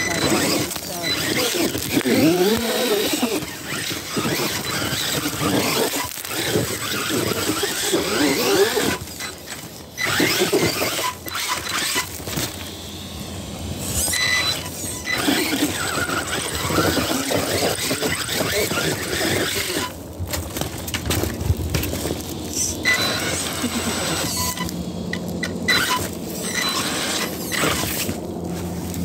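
Axial Ryft RBX10 RC rock bouncer's electric drive motor whining as it revs up and down in repeated bursts, with the tyres spinning and scrabbling over rock and loose dirt on a steep climb.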